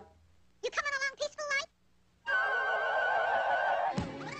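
Cartoon soundtrack: a quick run of short, high-pitched chattering sounds about a second in, then after a brief gap a long held wavering note over a dense musical backing.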